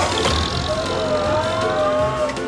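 Cartoon forklift's engine sound effect, a steady running rumble as it drives, with a held pitched tone sliding slowly upward over it.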